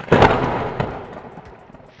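An explosion sound effect: a sudden loud blast with crackle that dies away over about a second and a half.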